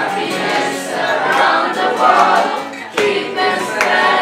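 Music with singing voices: a song playing without a break.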